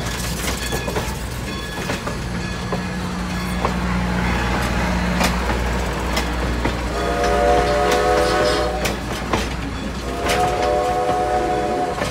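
Passenger cars of a steam-hauled excursion train rolling slowly past close by, wheels clicking over the rail joints above a steady low rumble. The locomotive's steam whistle sounds two long blasts in the second half, about a second apart.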